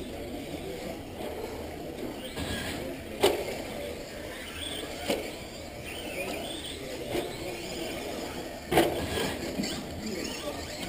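Radio-controlled off-road car running on a clay track, its motor whining up and down, with two sharp knocks, one about three seconds in and one near the end.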